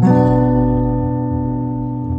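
Acoustic guitar strummed once on a B minor barre chord, barred at the second fret and strummed from the fifth string down; the chord rings out and slowly fades.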